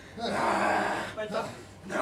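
A person's loud, breathy cry lasting about a second, followed by a brief, shorter vocal sound.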